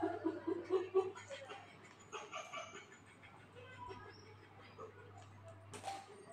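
Faint voices with a short run of laughter in the first second, then scattered quieter murmuring, over a steady low hum; a sharp click near the end.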